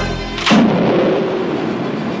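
A deep rumble, then about half a second in a sudden loud explosion whose noise fades slowly through the rest, under music.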